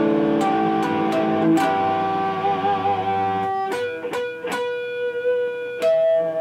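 Natural harmonics plucked on a PRS electric guitar: clear, bell-like ringing notes struck one after another and left to sustain, with a brief wavering of pitch about halfway through.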